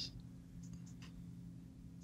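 Quiet room tone with a steady low hum and a few faint short clicks about half a second to one second in.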